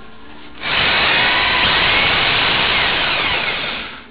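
Makita HR2450 780 W SDS-Plus rotary hammer run free in the air with a long bit fitted. The motor starts about half a second in, runs loud and steady for about three seconds, then winds down with a falling whine near the end.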